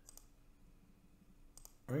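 Quiet computer mouse clicks: one near the start and a quick pair about a second and a half in, as an on-screen drawing tool is picked and used.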